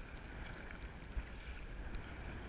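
Wind buffeting the kayak-mounted camera's microphone in a steady low rumble, over faint lapping and small splashes of sea water around the kayak, with one short knock just over a second in.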